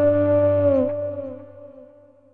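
Electric guitar ringing out the long sustained closing note of a ballad, a rich held tone that dips briefly in pitch a little under a second in and then fades out over the next second.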